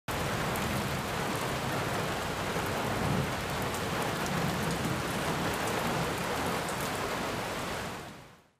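Steady, heavy rain with a low rumble underneath, fading out at the end.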